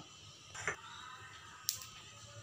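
Quiet pause with faint steady room hum, a brief soft sound about a third of the way in and one sharp click near the end.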